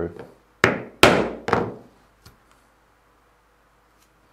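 Mallet striking a pricking iron three times in quick succession, punching stitching holes all the way through the leather, each blow a sharp knock with a short ring; two faint taps follow, then the work goes quiet.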